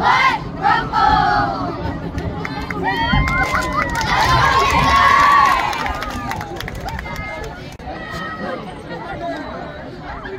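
Middle-school cheerleaders chanting a cheer in unison, the chant ending about a second in, followed by mixed shouting and cheering with one loud drawn-out shout a little past the middle, then settling into crowd chatter.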